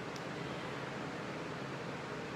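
Steady hiss of background room noise.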